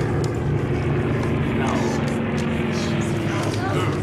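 Propeller aircraft engines droning steadily overhead, heard as part of a TV war drama's soundtrack.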